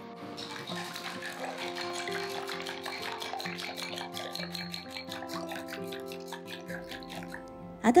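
Wooden chopsticks beating eggs in a glass bowl, a rapid run of light clicks against the glass, under soft background music with long held notes.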